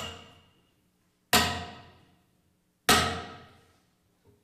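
Three loud hammer blows, evenly spaced about a second and a half apart, each a sharp strike with a brief ringing that dies away in the hall's reverberation.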